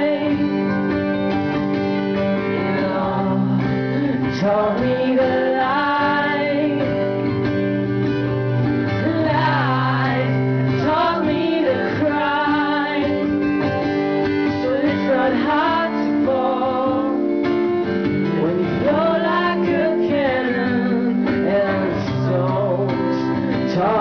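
A man singing with a strummed acoustic guitar: a slow folk song with held, gliding vocal lines over steady chords.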